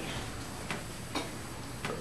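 Three soft clicks over a steady low hiss.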